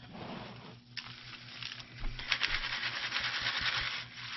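Dry worm castings being shaken and rubbed by hand through a wire-mesh sieve in a plastic bowl, a gritty rustling and crackling that grows louder about two seconds in.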